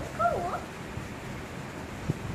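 A dog whining: one short, wavering whine that rises and falls, about a quarter second in.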